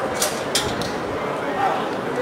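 Indistinct voices of people at a sports field talking and calling, with no single clear speaker, and a few short hissy sounds in the first second.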